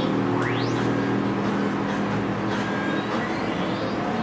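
Cartoon soundtrack playing from a computer: a steady low hum with a rising whoosh about half a second in.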